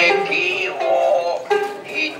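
Stylized kabuki vocal delivery: a high voice chanting in long, wavering, drawn-out tones that glide in pitch, with a short break about one and a half seconds in.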